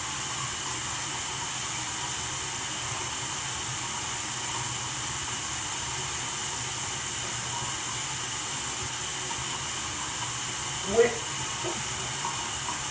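Bathroom sink tap running steadily, an even hiss of water, while a washcloth is wetted and used on the face. A short vocal sound comes near the end.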